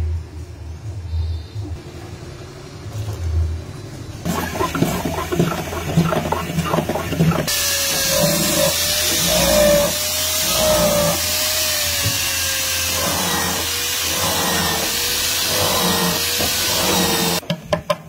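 Handheld electric drill boring holes into a wooden guitar fretboard for its position-marker dots. It starts about seven seconds in and stops shortly before the end, a steady cutting noise with a motor whine that wavers and sags slightly in pitch as the bit bites. It is preceded by quieter, uneven handling noise.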